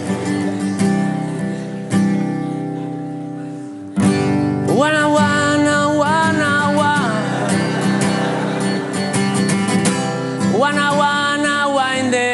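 A guitar strums chords that ring out, a fresh strum coming about four seconds in. A voice then comes in singing, sliding up into a long held note, and does so again near the end.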